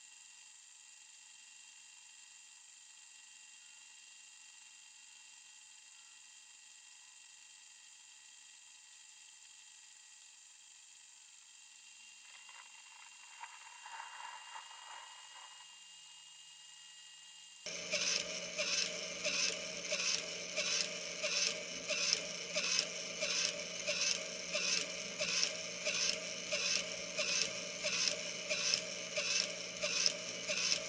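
Small TT gear motor driving a 3D-printed cam against a flexible PLA tab: a steady gear whine with a click about one and a half times a second, one per press of the tab at about 88 RPM. Before that, a little past halfway in, there is only a quieter steady high-pitched whine, and then the sound changes suddenly.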